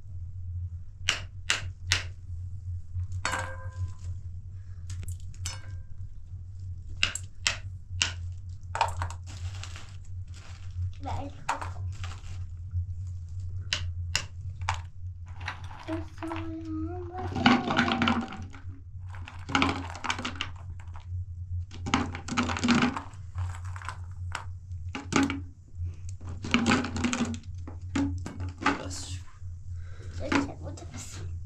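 Sharp knocks of a wooden pin cracking nuts in their shells, a string of separate strikes over the first ten seconds or so.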